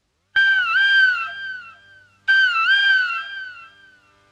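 Instrumental lead-in to a Tamil folk song: a high single melodic line, played as one short phrase and then repeated, each with a quick dip in pitch, then held and fading away over about a second and a half.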